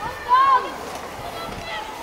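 A person's high-pitched voice calling out once, briefly, about a third of a second in, its pitch rising then falling, with a fainter call near the end, over a steady background hiss.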